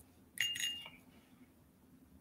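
Loose glass and metal beads clinking in a cupped hand as one bead is picked out: a single short clink with a brief ringing note about half a second in.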